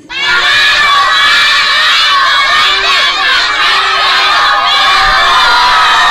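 A large group of children shouting and cheering together, starting suddenly just after the start and staying loud and steady throughout.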